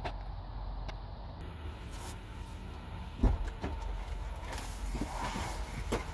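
A couple of dull thumps a little over three seconds in, over a steady low outdoor rumble, as someone climbs into a minivan's driver seat; a click follows near the end.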